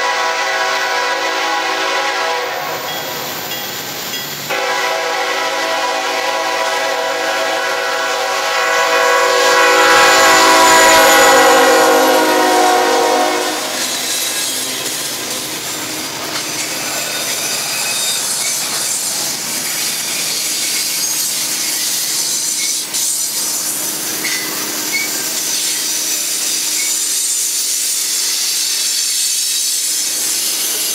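A freight train's lead locomotive, a BC Rail GE C40-8M diesel, sounds its horn in two long blasts as it approaches. The second, louder blast drops in pitch as the locomotive passes. Autorack cars then roll past with steady wheel-on-rail noise and a thin wheel squeal.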